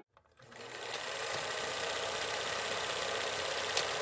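Film projector sound effect: a steady mechanical clatter fades in after a brief silence, with one short tick near the end.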